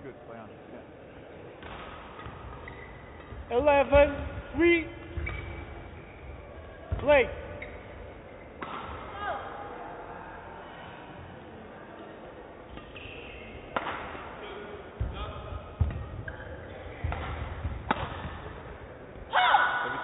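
Badminton rally: rackets striking a shuttlecock in a series of about five sharp hits roughly a second apart in the second half, in a large hall.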